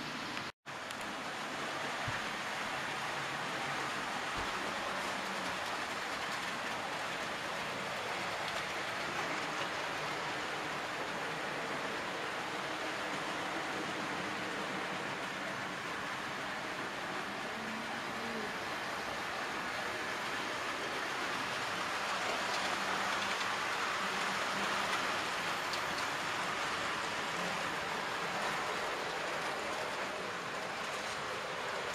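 Model trains running on a layout: a steady rumble and whirr of small electric motors and wheels on the track. The sound cuts out briefly just under a second in.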